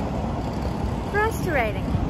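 Steady city street noise with a low traffic rumble. A voice is heard briefly past the middle.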